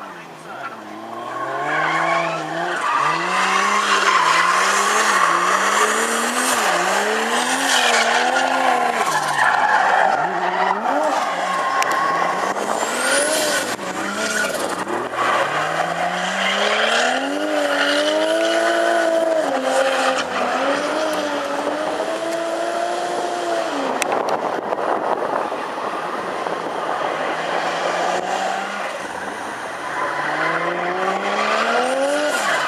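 Nissan 180SX drifting: the engine revs up and down in quick repeated swings, then climbs and holds high revs, over continuous tyre squeal as the rear tyres spin and slide.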